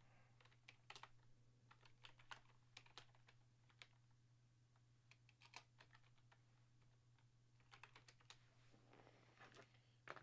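Faint, irregular clicking of computer keyboard typing, a few keystrokes at a time with short pauses, over a low steady hum.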